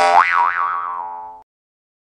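A cartoon 'boing' sound effect: a sudden twangy tone whose pitch wobbles up and down twice, dying away over about a second and a half.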